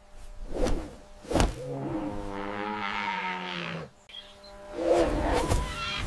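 Low, pitched call of a displaying male ostrich: one long held call of about two seconds in the middle, with shorter calls before it and again near the end.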